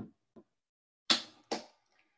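Two sharp knocks about half a second apart, after a couple of faint clicks, as a plastic hydrogen peroxide bottle is handled on a plastic table top.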